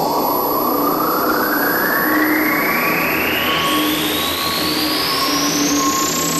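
Electronic music build-up: a synthesizer noise sweep rising steadily in pitch, with short repeated synth notes underneath.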